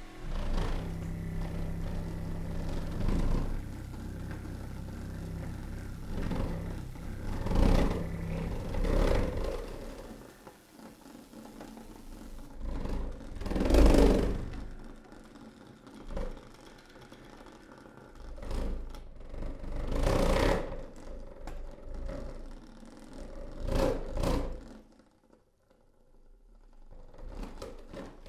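Experimental ensemble music played on a saxophone-with-hose, electric motors and electronics: a low steady hum with held tones for the first ten seconds or so, then separate swelling noisy bursts every few seconds, the loudest about halfway through.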